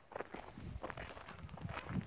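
Footsteps on loose gravelly soil: a run of irregular, fairly faint steps.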